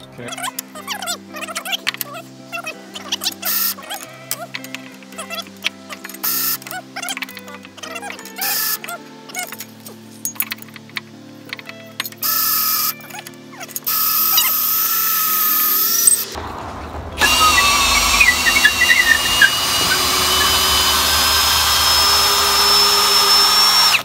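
Cordless drill boring a long hole through a thick wooden beam with a long auger bit, set to its low first speed. It runs in short bursts at first, then for the last eight seconds or so it runs continuously and loudly under load, its whine sliding down in pitch as the bit bites. Background music plays underneath.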